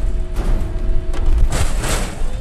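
Police rollover simulator rotating its pickup cab: a steady hum from the drive over a low rumble, then a loud burst of noise near the end as the cab comes round upright.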